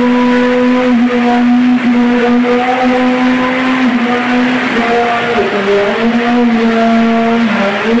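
Heavy rain hissing steadily under a loud held drone-like tone that shifts pitch a little every second or two.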